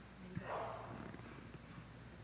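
Faint room tone through the chamber's sound system: a steady low hum, a light click about a third of a second in, then a brief faint murmur.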